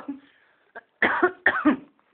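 A person in a laughing fit lets a laugh trail off, then coughs out two short, sharp bursts about a second in.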